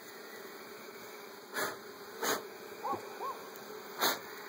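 Honeybees buzzing steadily around an open hive. Two short louder noises come in the middle, and two brief hoot-like calls near the end.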